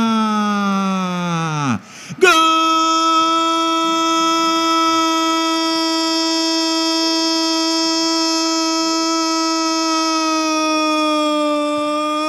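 Portuguese-language football commentator's drawn-out goal cry, "gooool". A falling shout fills the first two seconds, then after a brief break a single loud note is held steady for about ten seconds.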